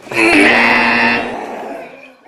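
Game-show 'wrong answer' buzzer sound effect: a harsh, steady tone lasting about a second, then trailing off. It marks the guess as wrong.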